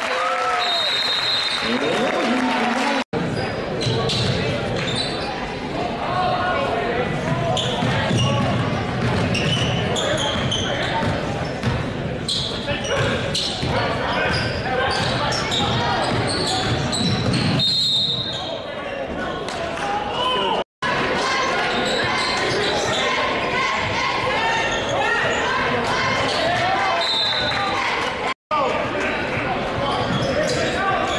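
Basketball game in a gym: the ball bouncing on the hardwood amid crowd chatter and shouts echoing in the large hall. The sound cuts out to silence for an instant three times.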